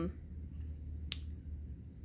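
Quiet room tone with a low steady hum, broken by one short, sharp click about a second in.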